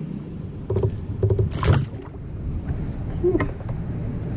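Handling noises on a Hobie fishing kayak: a steady low rumble with several short knocks and a brief hiss about a second and a half in.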